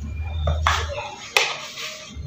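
A hand mixing and squeezing moist, crumbly dough in a plastic bowl: rustling, squishing handling noise, with a single sharp tap about a second and a half in.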